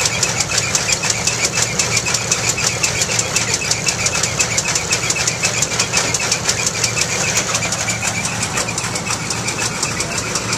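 Vintage belt-driven peanut thresher running, a steady, rapid, even mechanical clatter.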